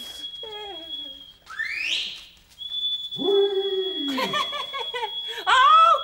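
A steady high-pitched whistle breaks off about a second and a half in, with a short rising whistle sweeping up into it. It then comes back and holds under laughter and voices, which grow loudest near the end.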